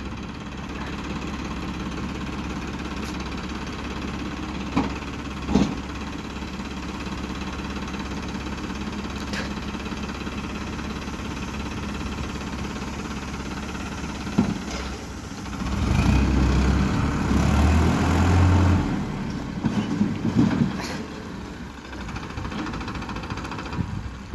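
Farmtrac Powermax 60 tractor's diesel engine idling steadily, with a few sharp knocks. From about two-thirds of the way in it revs up louder for about three seconds as the tractor takes up the load, then drops back.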